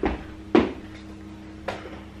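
Two short knocks about half a second apart, then a fainter click near the end, over a steady low hum.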